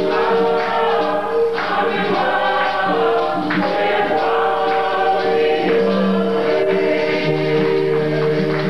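A congregation singing a song together in chorus, holding long notes, with light percussion keeping time.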